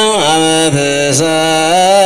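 Ethiopian Orthodox liturgical chant (mesbak), a single voice holding long, slowly bending notes. The pitch drops shortly after the start, and the line breaks briefly twice around the middle before settling on a held tone.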